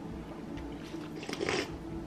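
Quiet eating sounds from a bowl of ramen: chewing, with a few faint short sounds about one and a half seconds in.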